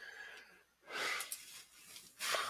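A person breathing close to the microphone, one soft breath about a second in, with a couple of faint clicks just after it.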